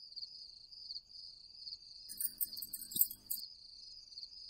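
Cricket chirping steadily in a continuous pulsing high trill. A little past halfway, a short rattle of clicks and knocks lasts about a second and a half.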